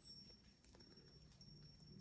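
Near silence: quiet outdoor ambience with a few faint ticks and a faint steady high tone.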